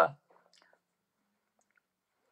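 A man's spoken word trailing off, then a pause of near silence with only a few faint traces of sound.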